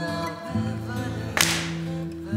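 Music: a slow Neapolitan song with long held notes, broken by one sharp crack about one and a half seconds in.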